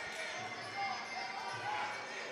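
Faint shouting from ringside: a fighter's corner calling out instructions such as "get off the ropes", heard over the steady background noise of the venue.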